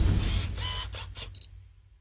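Closing sound effect: a quick run of about five sharp clicks over the fading tail of a low boom, dying away to silence about a second and a half in.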